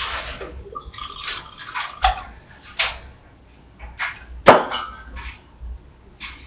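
A short pour of liquor into a shaker glass of ice near the start, then glass bottles handled and set down, with clinks and scrapes and one sharp knock of glass on a hard surface about four and a half seconds in.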